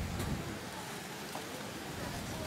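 Wheels of many inline speed skates rolling on a paved track, a steady rolling noise with a few faint clicks from the strides.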